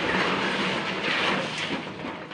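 A motor or vehicle running with a steady rushing noise and a faint low hum, swelling slightly twice.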